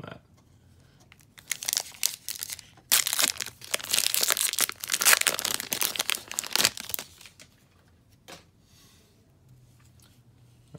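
A 2020 Topps Update Series baseball card pack's plastic wrapper being torn open and crinkled. There is a run of sharp crackling from about a second and a half in to about seven seconds, loudest in the second half, then it goes quiet.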